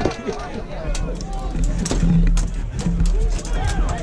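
Many voices of armoured fighters shouting and calling at once, with repeated sharp knocks and clacks of weapons striking shields and armour in the melee.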